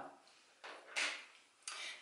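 Small white sewing-machine cleaning brush set down on a wooden tabletop, with hands shifting on the table: a few faint knocks and one sharper click about half a second apart.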